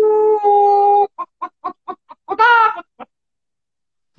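Clucking and cackling like a hen: a long held call, then a quick run of short clucks at about five a second, a second longer wavering call about halfway through, and one last short cluck.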